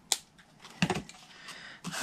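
Small craft scissors snipping the ends of gold cord trim: one sharp snip just after the start, then a few lighter clicks and knocks about a second in.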